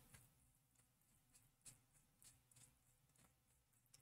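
Near silence, with a few faint soft taps from a foam pouncer dabbing etching cream through a stencil onto a glass dish.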